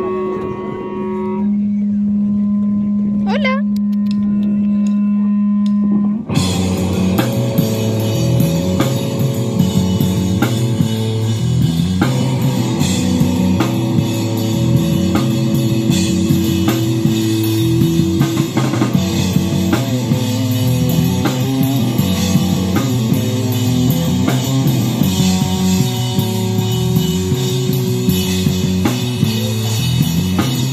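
Live hardcore punk band of electric guitar and drum kit played through small amplifiers. A single note is held for about six seconds, then the full band comes in with a driving, repeating riff and drums.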